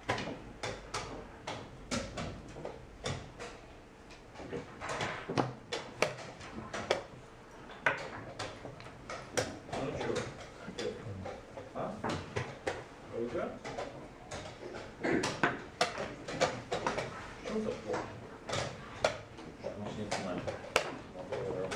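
Wooden chess pieces set down on the board and the buttons of a digital chess clock pressed, a rapid run of sharp clacks and clicks at blitz pace, with indistinct voices murmuring underneath.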